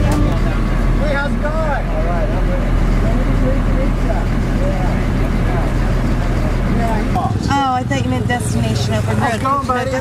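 Vehicle engine running slowly, heard from inside the cab under people talking; the low rumble stops suddenly about seven seconds in.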